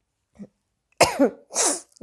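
A woman coughs about a second in, with a short word and a second sharp, breathy burst just after it.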